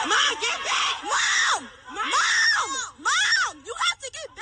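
Women screaming and yelling in a fight, a string of high shrieks that rise and fall, about six in four seconds.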